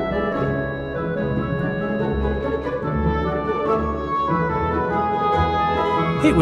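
Background music with sustained organ-like keyboard chords that change every second or so.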